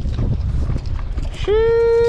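Wind rumbling on the microphone, then about a second and a half in a man's drawn-out vocal exclamation, held on one steady pitch for most of a second.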